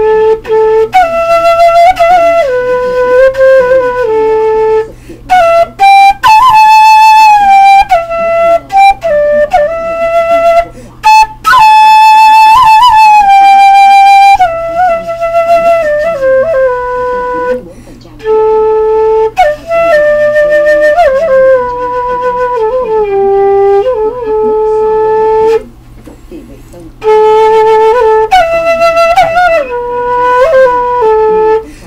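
Homemade six-hole transverse flute of thin half-inch PVC pipe, no thumb hole, playing a slow melody of held notes stepping up and down, with short breath pauses about five, eleven, eighteen and twenty-six seconds in.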